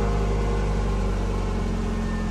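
Kia Optima sedan's engine idling steadily, an even low note that holds without change.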